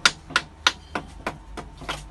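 A hard object repeatedly struck against a tempered-glass screen protector on a phone: about seven sharp taps, roughly three a second. The glass does not break under the blows.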